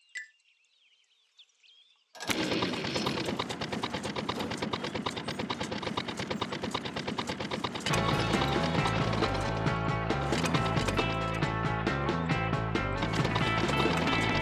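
Near silence for about two seconds, then a fast, even rattle from a cartoon tractor engine sound effect. About eight seconds in, background music with a bass line joins it.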